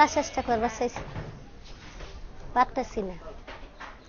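Speech only: a woman talking in Bengali in two short stretches, with a pause of about a second and a half between them.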